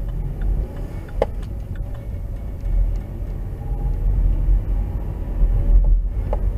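Car interior noise from a windscreen-mounted dashcam: a steady low engine and road rumble as the car pulls away from walking pace and speeds up to about 17 mph, with a single sharp click about a second in.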